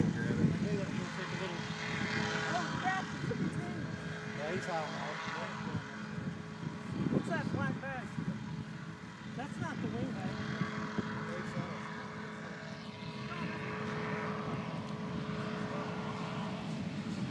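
Distant powered parachute's engine and propeller giving a steady drone, with indistinct voices talking over it.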